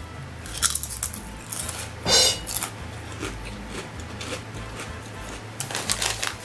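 Popped potato chip crunching as it is bitten and chewed: a few sharp crunches in the first couple of seconds, the loudest about two seconds in, then fainter chewing.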